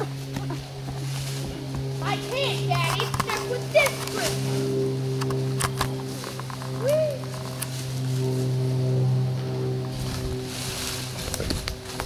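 Lawn tractor engine running at a steady idle, a constant low hum throughout. Scattered snaps and clicks of sticks and brief bits of voices sit over it.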